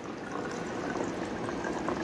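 Water pouring in a thin, steady stream from a plastic measuring jug into a plastic water bottle, filling it.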